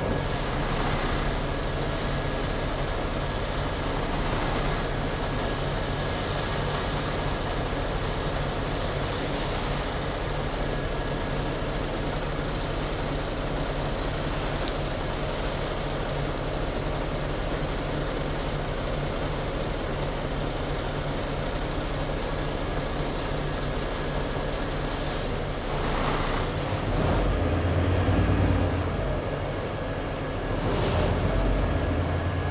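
Inside a city bus: the engine running with steady road and cabin noise. Near the end the engine's low rumble swells louder for a few seconds.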